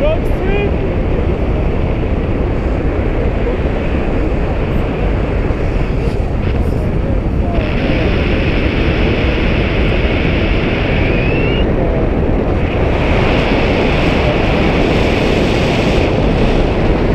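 Loud, steady wind rushing over the camera's microphone as the paraglider flies.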